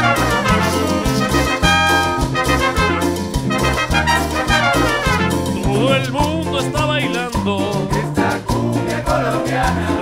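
A Colombian cumbia played by a Latin dance band: trumpets and trombone play riffs over bass, drums and hand percussion, and a singer's voice comes in about halfway through.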